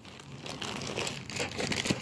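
Plastic packaging crinkling and rustling in irregular bursts as items are moved about by hand, including a soft plastic pack of baby wipes.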